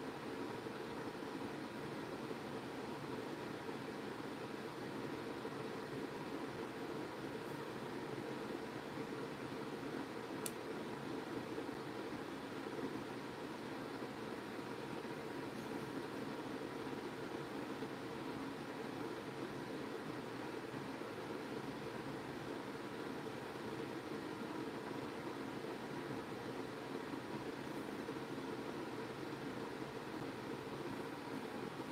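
Steady background hiss with a faint even hum: room tone, with one faint click about ten seconds in.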